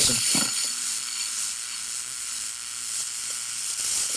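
MIG welding arc on aluminum from a Hobart IronMan 230 with a spool gun: a steady, nice and smooth hiss of spray transfer. The metal is hot from the previous bead, so the arc runs smooth without sputtering on the same settings.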